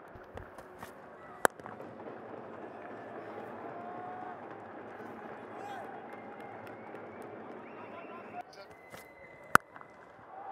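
Steady stadium crowd noise at a cricket ground, with a sharp knock about a second and a half in and a louder sharp crack of bat hitting ball near the end.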